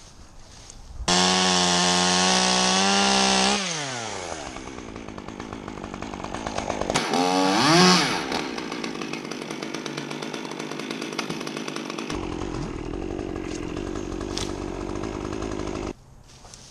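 Gas chainsaw held at full throttle for a couple of seconds, then dropping back to a lower speed. It revs up again about eight seconds in, the loudest moment, falls back and keeps running until it cuts off suddenly at the end.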